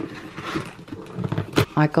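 Handling noise of a cardboard box being lifted and shifted on stacked plastic storage containers: soft rustling and scraping, then a short knock about one and a half seconds in.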